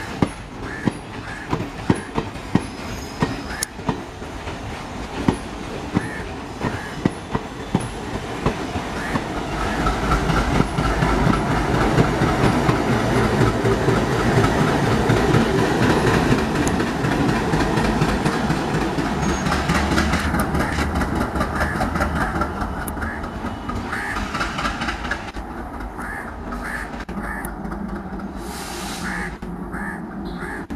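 Train wheels clicking over rail joints in a quick steady rhythm of about two a second, then a WDG3A diesel locomotive passing close, its ALCO V16 engine making a loud low rumble that swells through the middle and fades away. Wheel clicks come back near the end.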